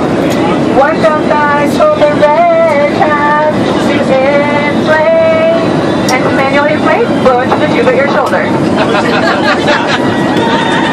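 High-pitched voices of several women talking and calling out over the steady drone of an airliner cabin.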